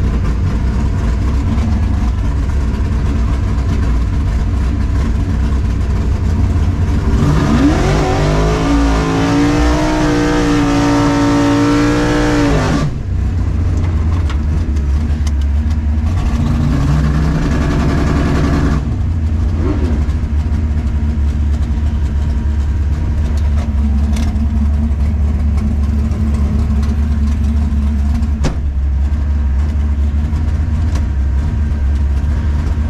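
1964 Chevelle drag car's engine, heard from inside the cockpit, running at idle. About seven seconds in it revs up and holds high for some five seconds before dropping back. A shorter, lighter rev follows a few seconds later, and then it settles back to a steady idle.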